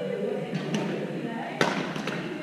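Badminton rackets hitting the shuttlecock, two sharp hits about a second apart, with voices in the background, echoing in a large gym hall.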